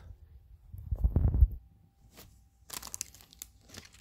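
A perfume box's packaging being torn open by hand: a loud low handling bump about a second in, then crinkling and tearing of the wrapping near the end.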